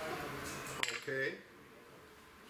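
Soft puffing on a freshly lit tobacco pipe, then a sharp metallic clink a little before one second in as a small knife is set down on the table, followed by a brief voiced hum.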